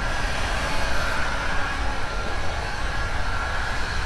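Wind buffeting the microphone as a fluctuating low rumble, over a steady outdoor background hiss with a faint high steady tone.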